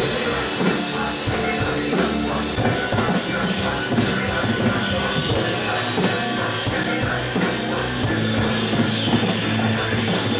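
Rock music with a drum kit, playing steadily and loudly.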